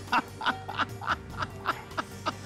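Comedic background music: short staccato notes at about three a second over a steady held tone.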